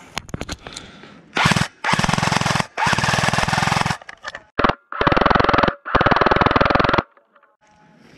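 XM177E1 electric airsoft gun (AEG) firing several full-auto bursts, each about half a second to one and a half seconds long with short gaps between, after a few scattered clicks.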